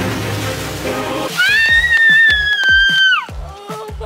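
Splash of a person jumping into a swimming pool, over background music with a steady beat. About a second and a half in, a long high-pitched squeal rises, holds for nearly two seconds and drops away.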